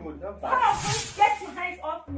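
A person hisses sharply for about half a second, then speaks in short phrases.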